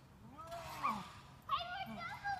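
Wordless voices of people on swings: a low, drawn-out vocal sound that rises and falls in pitch for about half a second, then a high-pitched squeal about a second and a half in.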